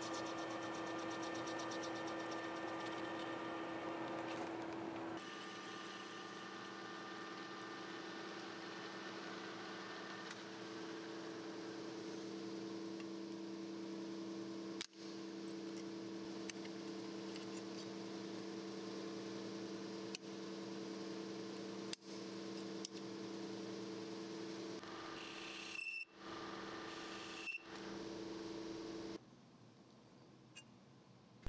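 Metal lathe running steadily while a carbide tool turns a stainless steel flange, machining off an old weld; a steady spindle and motor hum with a few constant tones, broken off abruptly several times.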